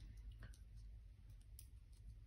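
Near silence with a couple of faint clicks from a metal pokey tool picking at a clear plastic sheet of adhesive craft pearls.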